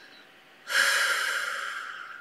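A woman's long audible breath, a soft hiss that starts suddenly about two-thirds of a second in and fades away slowly over about a second and a half.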